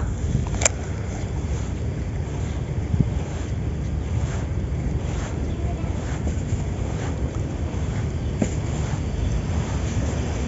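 Wind buffeting the microphone, a steady low rumble, with a single sharp click under a second in.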